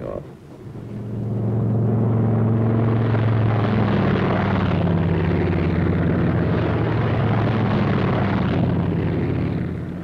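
P-47 Thunderbolt fighter's radial engine at takeoff power, swelling up over the first second or so and then holding a loud, steady drone. The pitch eases down slightly about four seconds in.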